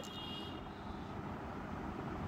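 Quiet, steady low rumble of background noise, with no distinct handling sounds standing out.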